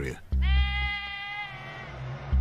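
A sheep bleating once, one long steady call of about a second and a half, over low background music.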